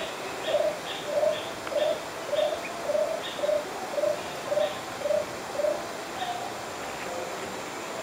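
A forest bird calling a run of about a dozen short, low cooing notes, roughly two a second, which stops about six seconds in; fainter high chirps from other birds sit above it over a steady hiss of forest ambience.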